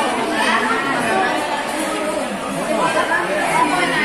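Several people talking at once: overlapping, steady conversation among a seated group.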